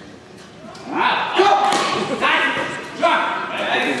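Spectators shouting encouragement, repeated calls of "nice" that start about a second in, over thuds of a wushu performer's feet landing and stamping on the carpeted competition floor.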